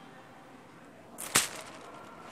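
A single sharp knock or snap about a second and a half in, over faint room noise.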